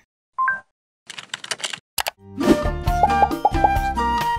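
Sound effects and music of an animated logo intro: a short pitched pop, a quick run of clicks and one sharp click, then a short musical jingle with a bass line and bright melodic notes that starts about two seconds in.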